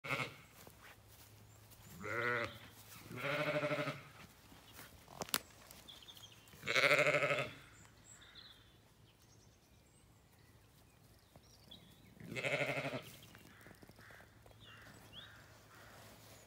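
Zwartbles sheep bleating, about four wavering calls, the loudest about seven seconds in.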